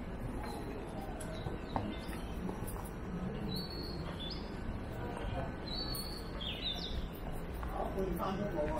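Small birds chirping in woodland: short high whistled notes, some sliding in pitch, coming in small runs mostly in the middle and latter part, over a steady low background hum of outdoor noise.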